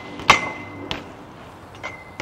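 A metal pipe, propped up as a makeshift mini pole jam, being knocked: a loud clank with a ringing metallic tone that hangs for most of a second, then a second, shorter clank.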